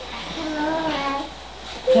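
A toddler's sing-song vocal sound: one held, slightly wavering note of about a second.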